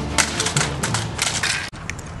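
A plastic computer keyboard being smashed on pavement: a quick run of sharp cracks and clatters that cuts off abruptly just before the end.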